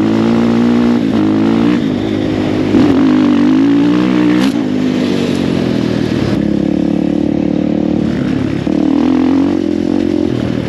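Enduro dirt bike engine running under way on a dirt track. Its pitch climbs and drops with the throttle and gear changes several times, with a brief louder burst about three seconds in, then holds a steadier note.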